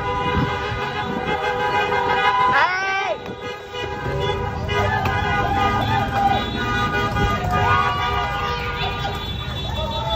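Several car horns honking at once, many held long and overlapping, over the rumble of slow passing traffic, with voices calling out now and then.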